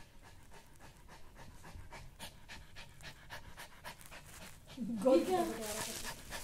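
Pet dog panting fast with its mouth open, a quick, even rhythm of short breaths. About five seconds in, a louder voice with a rising and falling pitch cuts in over it.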